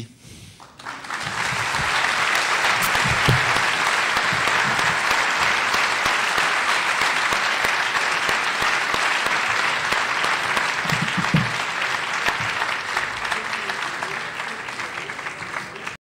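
Audience applauding, starting about a second in and holding steady, easing a little near the end.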